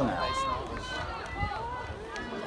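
Spectators' voices: overlapping chatter and calls, fainter than the talk just before.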